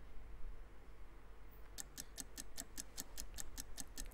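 Ticking sound effect of a one-minute countdown clock, starting about two seconds in with quick, even ticks, about five a second.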